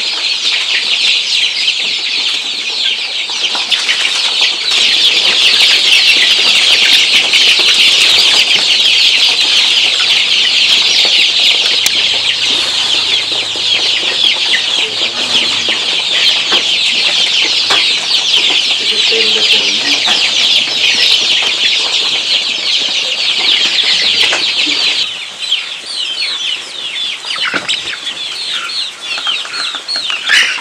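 A flock of young joper chickens peeping in a dense, continuous chorus of high-pitched calls. About 25 seconds in, the chorus thins to more separate peeps.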